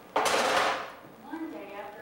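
A woman's sudden loud, breathy vocal outburst lasting about half a second, then her speaking voice resumes.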